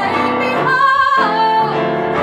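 A woman singing a jazzy song while accompanying herself on a Yamaha electronic keyboard, holding one long wavering note in the middle.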